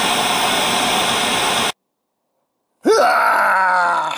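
Television static hiss that cuts off abruptly a little under two seconds in. After a second of silence, a man's voice lets out a long, drawn-out groan.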